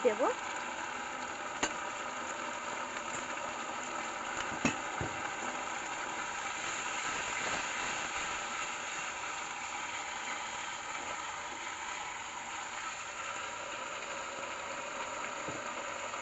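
Soya chunks and onions frying in a sauce of soy sauce, tomato sauce and vinegar in a steel wok, a steady sizzle. A steel spatula clicks against the wok twice, about two and five seconds in.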